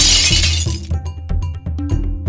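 A crashing, shattering sound effect that fades out within about the first second, over rhythmic percussive background music.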